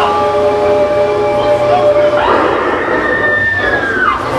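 Sustained opening tones of the act's music: a chord of several steady held notes for about two seconds, then a single high note that holds and slides down near the end.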